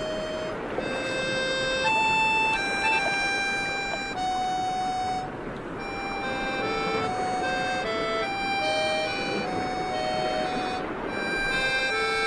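Film score: a slow, wistful melody of held notes on accordion, stepping from note to note.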